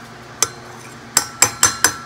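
A spoon knocked against the rim of a rice cooker's metal inner pot: one sharp knock, then four quick knocks about a second in, each with a short ring.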